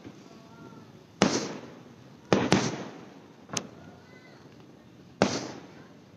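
Aerial fireworks bursting in the distance: about five booms, each trailing off in an echo, one of them a sharper crack in the middle.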